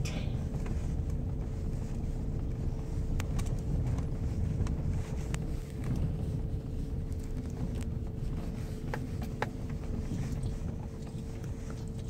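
A vehicle driving, heard from inside the cab: a steady low rumble with a faint steady hum and a few light ticks.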